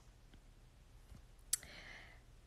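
Quiet room tone, broken by a single sharp click about one and a half seconds in, followed by a faint breath.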